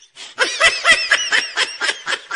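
High-pitched laughter: a fast run of short 'ha' syllables, about seven a second, starting about half a second in.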